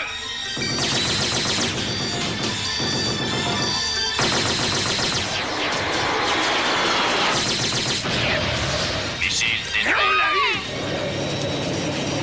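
Two long bursts of rapid automatic gunfire, the first about a second in and the second about four seconds in, over background music.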